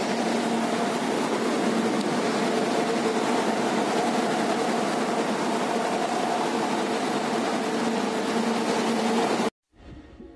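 Steady hum and hiss of an idling bus, unchanging, cutting off abruptly near the end.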